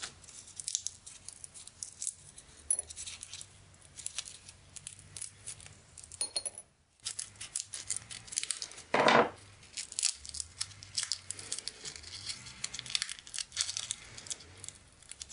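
Dry seed pods crackling and rustling as they are handled and broken open by hand, with seeds clicking into a small ceramic bowl. One louder rustle about nine seconds in.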